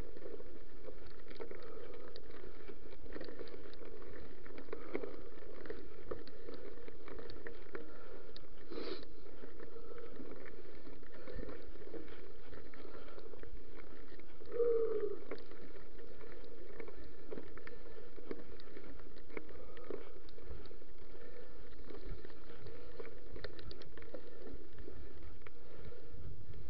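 Mountain bike riding over a gravel and dirt track: steady rolling noise with frequent small clicks and rattles from the tyres and bike, and a brief squeak about halfway through.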